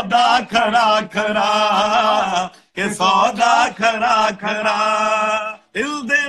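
Singing: long held, wavering notes in two phrases, with a short break about two and a half seconds in.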